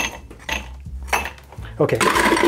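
Ice cubes clattering as they are scooped from an ice bucket and poured into two rocks glasses, in a few separate bursts.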